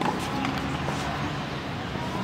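Outdoor tennis-court ambience with a steady hubbub of distant voices. There is one sharp knock of a tennis ball right at the start and a fainter knock near the end.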